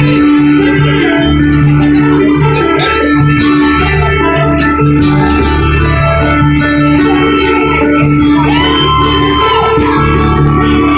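Live band music played loud, with a long held note over a pulsing bass line.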